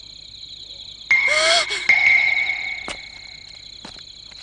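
Animated fight sound effects: a blow lands suddenly about a second in with a short grunt and a held ringing tone that fades out over the next second and a half. Steady high insect chirring runs under it throughout.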